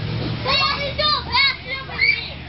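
Young children's high-pitched voices calling and squealing in several short bursts in quick succession, over the steady low hum of the inflatable bounce house's blower fan.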